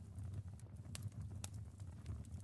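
Faint background ambience of a crackling fire: irregular small crackles and pops over a low, steady rumble.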